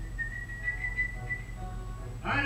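Film soundtrack playing from a television: a single high, held whistle-like note over soft background music, fading about a second and a half in.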